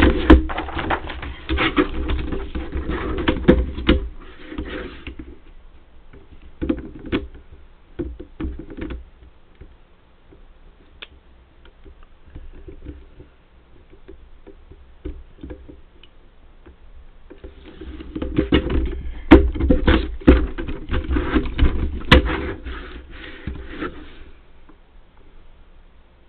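A plastic paper trimmer and a laminated sheet being handled on a desk: bursts of clattering knocks and plastic rustling at the start and again through the last third, with a few scattered knocks in between.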